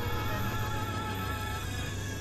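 Experimental synthesizer drone: a steady low hum under a dense layer of held tones, with a high warbling tone wavering through the first second or so.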